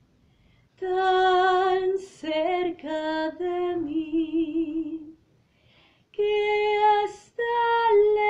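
A woman singing solo and unaccompanied: long held notes with a light vibrato, in short phrases broken by breaths and brief silences.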